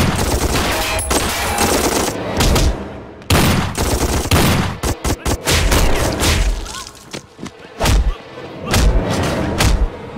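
Film-soundtrack gunfire: repeated bursts of automatic rifle fire in a shootout, broken by short pauses a few seconds in and again past the middle.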